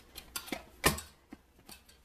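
Hands kneading dough in a stainless-steel bowl: scattered light clicks of metal bangles and a ring against the bowl, with one louder knock a little under a second in.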